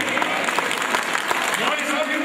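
A congregation applauding, a dense patter of clapping with voices mixed in.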